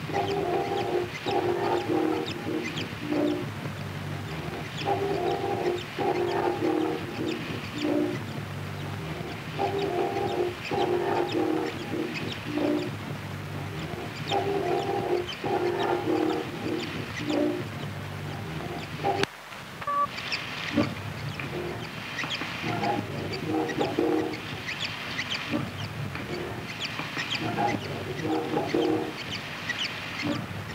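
Experimental noise collage: a looped phrase of clustered tones repeating about every four to five seconds over a rough, crackly bed. It cuts out abruptly about nineteen seconds in and resumes with a changed loop.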